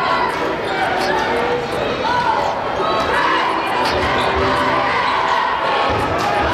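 A basketball dribbled on a hardwood gym floor, with a few sharp knocks, under the steady chatter and shouts of a large crowd echoing in a big gym.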